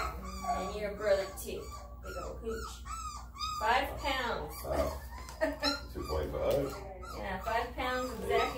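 Three-week-old Rhodesian Ridgeback puppies whining and squealing over and over in short, rising and falling cries.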